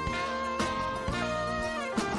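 Live jazz-fusion sextet with electric guitar, bass guitar and drum kit playing: long held melody notes that step to a new pitch about a second in and again near the end, over drum hits.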